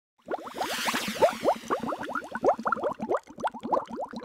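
Bubbling-water sound effect: a quick, continuous run of short rising bloops, several a second, with a brief hiss near the start.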